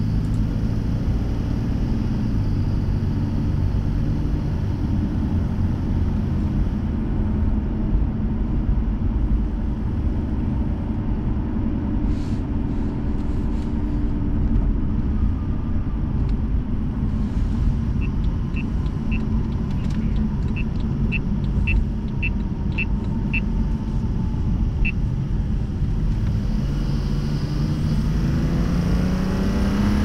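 BMW 640i's N55 turbocharged inline-six running at cruise in comfort mode, with steady road rumble. A run of faint, regular ticks about twice a second comes in the middle. Near the end the engine pulls and its pitch rises as the car accelerates.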